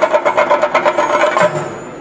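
Chenda drums beaten with sticks in a fast roll of about ten strokes a second, which stops with a heavier stroke about a second and a half in, then eases off.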